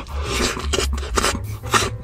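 Close-miked eating sounds: wet chewing and smacking of a soft cream-layered cake, in sharp bursts about every half second.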